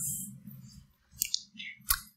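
A few short clicks and taps in the second half, over a faint low hum: handling noise at the lectern as a drink bottle is put down and the laptop is worked to change slides.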